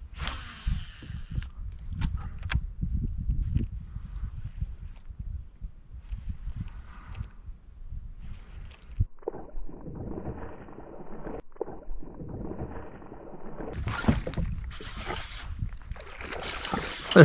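Wind rumbling on the camera microphone and water lapping against a fishing kayak, with scattered small clicks and knocks. About nine seconds in the rumble drops away and a softer rushing takes over, with sharper bursts of noise near the end.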